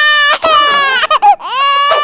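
A cartoon baby crying: two long, high wails with a few short sobs between them.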